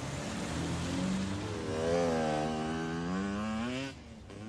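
A vehicle engine running, its pitch sagging and then climbing as it revs up toward the end.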